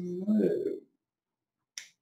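A man's long, drawn-out voiced yawn, ending about a second in, followed near the end by a single sharp click.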